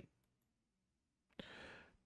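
Near silence, then a short, soft in-breath about one and a half seconds in, drawn just before speaking.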